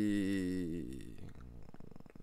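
A man's drawn-out hesitation sound, a long low "yyy" held on one pitch, fading out about a second in. A few faint clicks follow.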